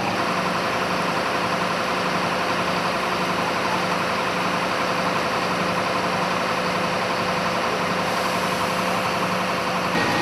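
An engine idling steadily, with a constant hum that does not change.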